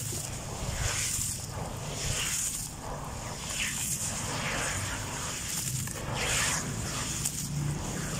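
Handfuls of wet, grainy sand crumbled by hand and dropped into muddy water in a plastic basin, a gritty splash and patter roughly once a second.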